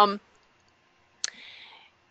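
A woman's trailing 'um', then a pause in near silence broken by a single sharp click about a second and a quarter in, followed by a soft hiss lasting about half a second.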